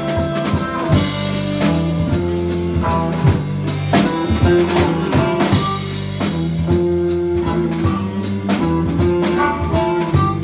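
Live band playing a slow blues-jazz groove: drum kit with regular hits, electric bass, and held melody notes from saxophone and harmonica played into a microphone.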